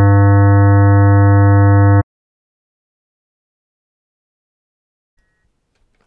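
A 100 Hz square wave built by additive synthesis from ten sine-wave oscillators, the first ten odd harmonics from 100 Hz up to about 1.9 kHz, each at 1/n strength. It plays as one loud, steady tone and cuts off suddenly about two seconds in.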